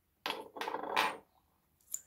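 Handling noise of small parts from a Dyson DC23 head: a scraping rustle about a second long as the steel shaft and the plastic turbine are handled, then a short click near the end.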